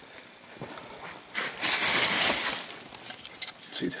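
Plastic sheeting rustling as it is handled, lasting about a second and a half from just over a second in, with a few light knocks around it.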